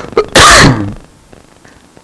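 A person sneezing once: a loud, sharp burst about half a second in, preceded by a short intake of breath.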